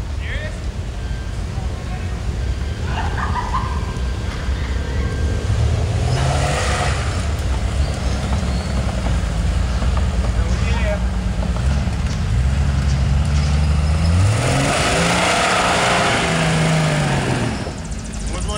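Jeep Wrangler YJ engine working in low gear as it crawls down into and through a dirt hole, the revs rising and falling repeatedly, loudest in the second half.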